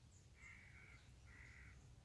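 A bird cawing twice, faintly, each call about half a second long and steady in pitch.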